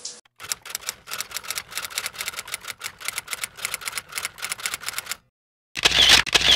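Typewriter keystroke sound effect: a quick, even run of clacking keystrokes, about eight a second, that stops abruptly about five seconds in.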